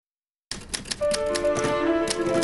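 Manual typewriter keys striking in a quick, irregular run of clicks, starting about a quarter of the way in. Held music notes come in underneath about halfway through.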